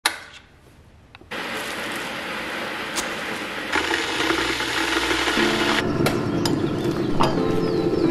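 Click of a stainless-steel Breville electric kettle being switched on, then the steady hissing rumble of the kettle heating water, growing louder about four seconds in. A few sharp clicks fall in the second half.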